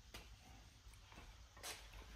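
Near silence: faint room tone with a few light clicks and a short rustle as an iron-block LQ4 engine is rolled over on its engine stand.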